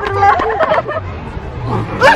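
Several people chattering at once, with overlapping voices.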